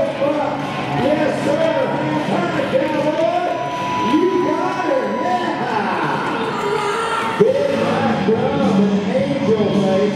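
Music playing over an arena's loudspeakers, with a crowd cheering and whooping, and a sudden knock about seven seconds in.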